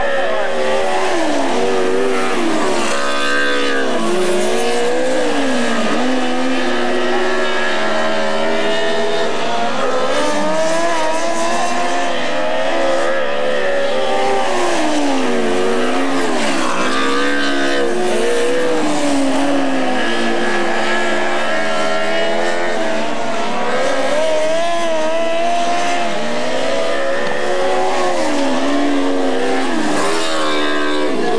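Open-wheel dirt-track race car engines revving hard around the oval. The pitch drops as they back off into the turns and climbs again down the straights, over and over.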